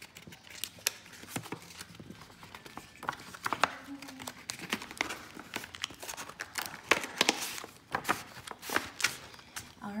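Clear plastic envelope sleeves crinkling and crackling in irregular bursts as a stack of stuffed cash envelopes is slid into a larger plastic envelope. A brief murmur of voice comes about four seconds in.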